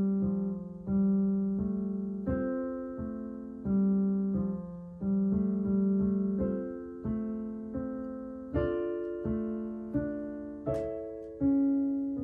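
A Kawai piano playing a slow piece in three-four time: chords in the right hand, with the melody carried in the left hand below. Each note is struck and left to die away, about one beat every second.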